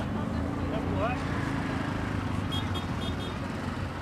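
Busy street ambience: a steady hum of car and motor-rickshaw traffic with voices in the background, including a brief raised call about a second in and a few short high pips a little later.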